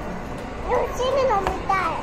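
A young girl speaking in a high-pitched voice from about two-thirds of a second in, over steady background noise.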